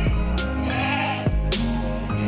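Background music with a regular beat, with a short rising-and-falling low from the tethered cow about a second in.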